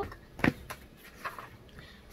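A single sharp knock about half a second in as a hardcover book is handled, followed by a few faint softer taps.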